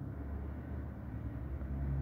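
Steady low background rumble with no distinct event.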